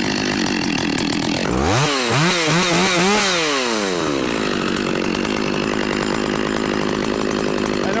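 Stihl two-stroke petrol chainsaw running steadily, revved up and down several times in quick succession from about one and a half seconds in, then settling back to a steady run.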